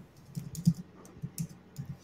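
Typing on a computer keyboard: short, irregular key clicks, a few a second.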